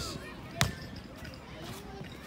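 A single sharp thud of a thrown rubber ball striking about half a second in.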